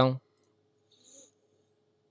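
A single faint computer mouse click about a second in, over quiet room tone with a faint steady low hum.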